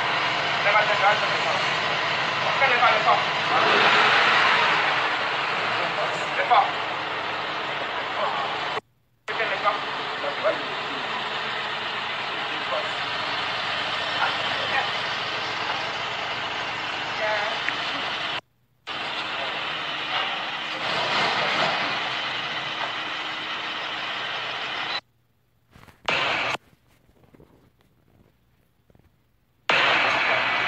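Street noise of people talking over a running vehicle engine. It is broken by abrupt cuts, and the last few seconds are nearly silent.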